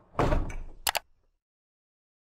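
Logo-sting sound effect: a whoosh that builds into a loud hit about a fifth of a second in, followed by two quick sharp clicks just before the one-second mark.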